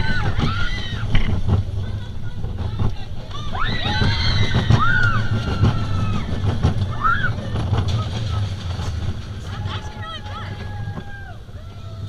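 Goofy's Barnstormer junior roller coaster train running along its track, with a steady low rumble of wheels and wind on the microphone. Riders squeal and shout in rising-and-falling cries near the start, about four seconds in and about seven seconds in. The rumble eases off near the end as the train slows.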